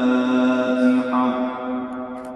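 A man's voice chanting Quran recitation, holding one long steady note at the close of the recitation. The note weakens about a second and a half in and trails away in the long reverberation of a great domed mosque.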